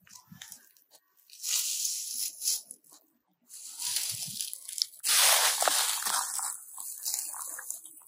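Footsteps crunching and rustling through a thick layer of dry fallen leaves, in several bouts with a short pause about three seconds in, loudest around five to six seconds in.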